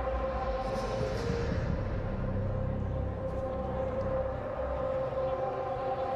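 Stadium background sound: a steady, unchanging held tone with its overtones over a low rumble of ambient noise.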